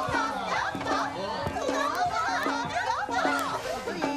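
Several voices chattering and laughing over each other, with background music.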